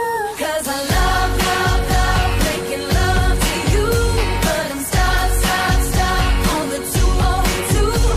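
Pop song with singing over a steady beat, a heavy bass beat coming in about a second in.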